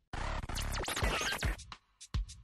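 Short sound-effect sting between radio spots: a dense burst of sweeping, scratch-like sounds with sliding pitches. It starts abruptly and stops a little before two seconds in.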